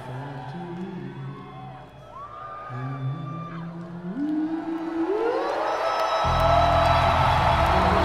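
Live band music: a bass line climbs step by step and the band slides upward into a loud, sustained full chord about six seconds in, with the crowd whooping and cheering.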